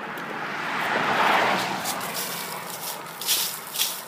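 A car passing on the road, its tyre noise swelling to a peak about a second in and fading away, with a couple of brief rustles near the end.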